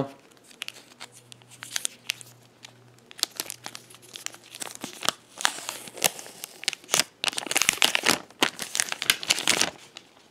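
Clear plastic protective film being peeled off a new smartphone, crinkling and crackling in irregular bursts that grow denser and louder from about halfway through.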